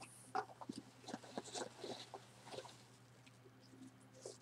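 Hands rummaging through foam packing peanuts in a cardboard box: faint, irregular squeaks and rustles.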